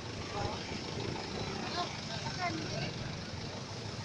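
Street noise: a steady low rumble of vehicles, with faint scattered voices of onlookers talking in the distance.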